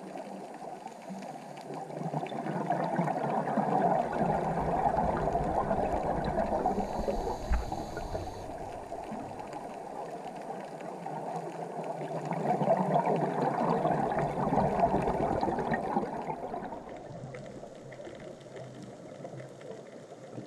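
Scuba regulator exhaust bubbles gurgling, heard underwater, rising and falling in two long swells as a diver breathes out.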